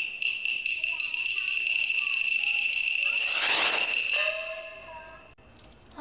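A steady, shrill, high-pitched trill with a fast pulse, which stops about four seconds in. A short held pitched note follows.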